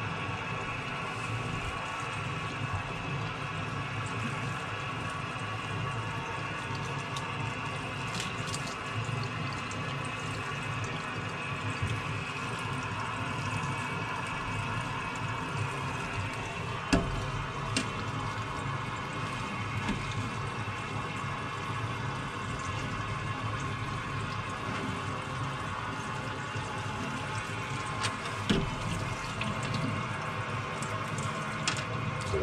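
Kitchen tap running steadily, splashing over a stainless steel sprouter of popcorn shoots into a stainless steel sink as the shoots are watered. A few short sharp knocks sound about halfway through and near the end.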